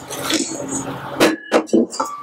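A spatula folding wet batter in a stainless steel mixing bowl: soft wet scraping and stirring, with a few sharper scrapes against the bowl's side a little past a second in.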